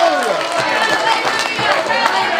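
A church congregation calling out in several overlapping voices, with quick footfalls mixed in.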